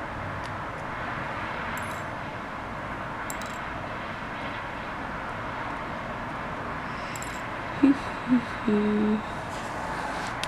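Steady hiss of background room noise with a few faint small clicks scattered through it. Near the end come two or three short hummed tones from a woman's voice.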